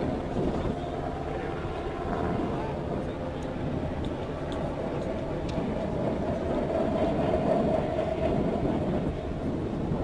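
LCAC hovercraft running on the beach: a steady rumble of its gas turbines and lift fans with a sustained whine that grows stronger in the second half.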